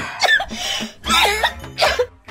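A man coughing hard into a tissue in three loud bursts over background music.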